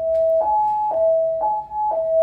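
Hotel fire alarm going off: a steady two-tone sounder alternating between a lower and a higher note, about half a second each.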